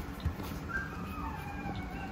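A dog whining faintly in the background: thin, drawn-out high tones at several pitches, starting under a second in.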